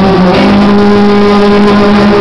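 A male singer's voice through a handheld microphone and stage sound system, sliding up at the start and then holding one long, steady note.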